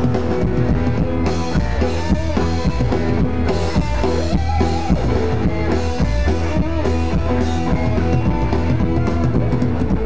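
Live band playing an instrumental break over a festival PA, heard from the crowd: drum kit with a steady bass drum, bass, and electric guitar playing lead with notes that bend in pitch.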